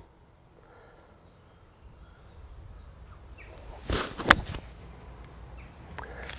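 Bunker shot with a pitching wedge: about four seconds in, a brief swish and then a sharp strike as the club splashes through the sand under the ball, over quiet outdoor background.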